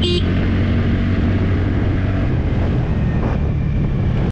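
TVS Ntorq 125 scooter's single-cylinder engine running steadily under way as the scooter picks up speed, with wind and road noise on the microphone.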